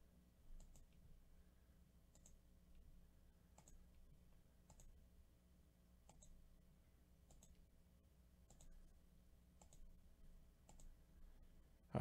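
Faint computer mouse clicks, about one every second and a bit, as a button is clicked over and over, against a faint steady low hum.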